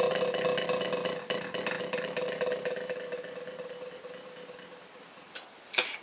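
Buzz roll (press roll) played with two drumsticks on a practice pad: a continuous dense buzz of overlapping multiple-bounce strokes, like tearing silk, that fades gradually away over about five seconds. Two light clicks follow near the end.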